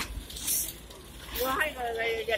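Speech: a voice starts about one and a half seconds in, after a short breathy noise near the start.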